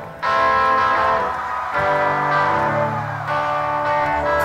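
Live rock band music starting: held, ringing chords that change every second or two.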